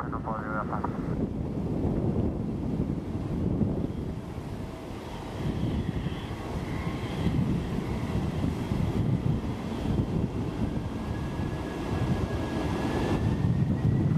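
Boeing 777 freighter's GE90 turbofans running at taxi power, a steady low rumble with wind buffeting the microphone. A faint high whine comes in through the middle and rises slowly near the end.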